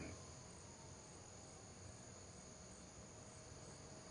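Faint, steady chirring of night insects: an outdoor night ambience bed under a pause in the dialogue.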